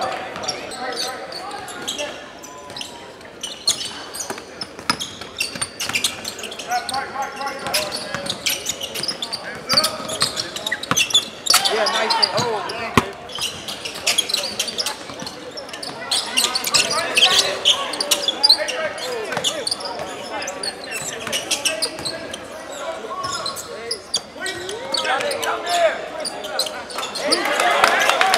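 A basketball bouncing repeatedly on a hardwood gym floor during live play, mixed with indistinct voices and shouts in the gym.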